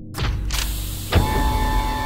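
Sci-fi blast-door opening sound effect: a hissing rush as the doors begin to slide, a heavy clunk about a second in, then a steady mechanical hum with ringing tones.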